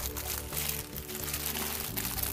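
Thin plastic bag crinkling as hands handle and pull it open, over steady background music.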